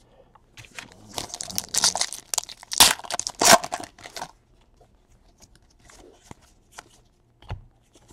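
Foil wrapper of a Panini Diamond Kings baseball card pack being torn open and crinkled, loudest around three seconds in. After that come a few faint clicks.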